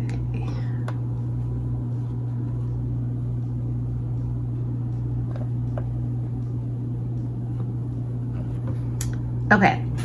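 A steady low hum, like an appliance or electrical hum, with a few faint small ticks as hands handle straight pins and a needle in crocheted yarn. A woman starts speaking near the end.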